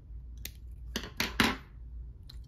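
Small sharp metal clicks of steel hemostats gripping and prying up the thin metal flange that holds the button battery in a pin's sound module. One click comes about half a second in, then three close together about a second in.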